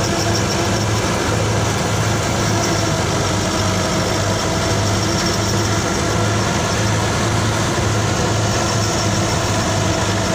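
Tractor diesel engine running steadily under load, driving a grain thresher: a constant low hum with the thresher's churning noise over it.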